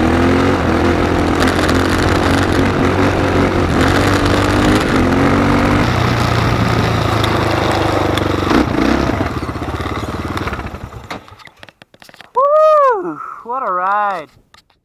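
Quad (ATV) engine running steadily while riding, with wind and road noise, dying away about ten seconds in. Near the end come two short pitched calls that rise and fall in pitch.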